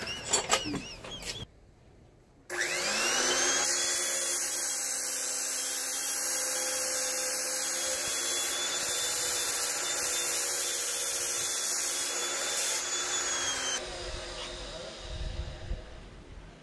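Electric abrasive chop saw (cut-off saw) starting up with a rising whine about two and a half seconds in, running at a steady pitch while it cuts steel tube, then switched off and stopping abruptly about fourteen seconds in.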